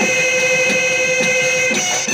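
Bihu folk music: dhol drums beating about twice a second under a long held note from a reed pipe, the buffalo-horn pepa.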